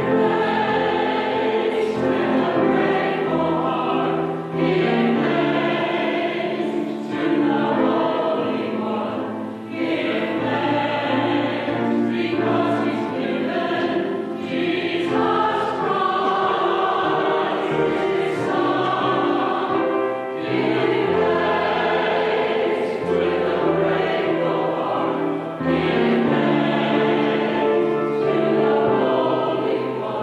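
Small church choir singing an anthem in sustained phrases, with brief pauses for breath between phrases.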